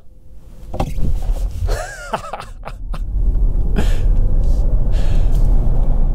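Car accelerating hard, heard from inside the cabin: a low road and wind rumble builds over about three seconds, then holds loud and steady, with a faint rising whine. A person laughs about two and a half seconds in.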